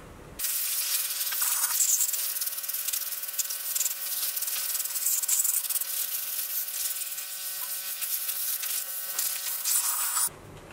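Compressed-air blow gun hissing steadily as it blows water off a wet-sanded wooden piece. It starts suddenly about half a second in and cuts off at the end.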